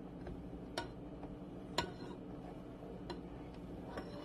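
Quiet kitchen with a steady low hum and three faint, sharp clicks, about a second apart.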